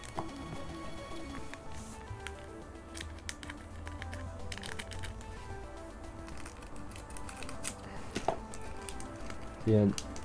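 Crinkling of a foil trading-card booster pack being handled and snipped open with scissors, with scattered small clicks, over quiet background music.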